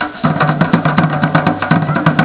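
Live drum group playing hand-beaten barrel drums and a double-headed drum struck with a stick: a fast, even beat of deep strokes with sharp clicks of stick hits over it.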